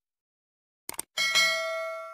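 Subscribe-button sound effect: a quick double mouse click a little under a second in, then a bright notification-bell ding that rings on and slowly fades.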